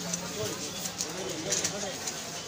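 Clinks of bottles and a spoon against a plastic jug as juice ingredients are poured in, a few sharp clicks, over low background voices.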